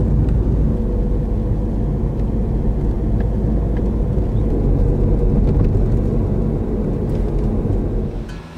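Car driving at a steady speed, heard from inside the cabin: a continuous engine hum with tyre and road noise, even throughout.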